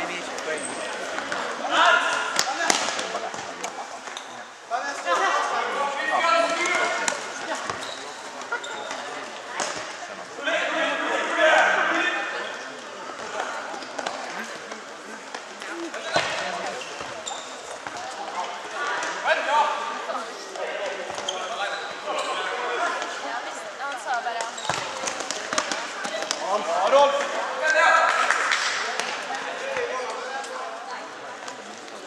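Futsal game in a sports hall: the ball is kicked and bounces on the hall floor again and again, among loud, indistinct shouts from players and spectators that come in bursts several times.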